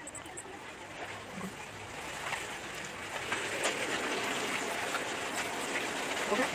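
Cooking oil sizzling in a frying pan: a steady hiss with scattered small pops, growing louder about three seconds in.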